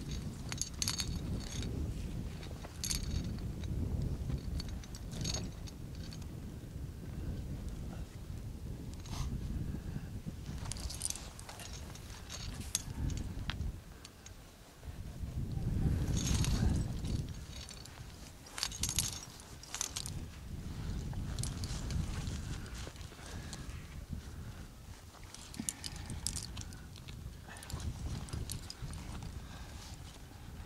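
Metal climbing gear (carabiners and other hardware on a harness) clinking in short, scattered jingles, over wind buffeting the microphone that swells about halfway through.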